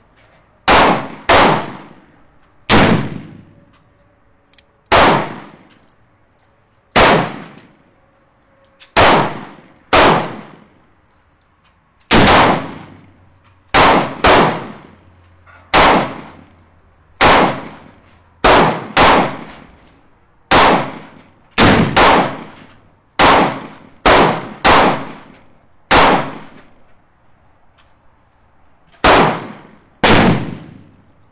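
Gunshots: about twenty sharp reports at irregular intervals of half a second to two seconds, each trailing off in echo. They come from a Pietta Remington New Model Army .44 percussion-cap revolver firing black powder loads, with more reports than its six chambers hold, so other guns on the range are firing too.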